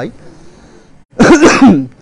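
A man clearing his throat once, a short, loud, rasping burst about a second in, after a brief quiet pause.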